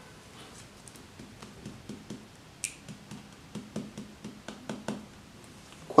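Light, irregular clicks and scrapes of baking soda being spooned into a small porcelain dish on a kitchen scale.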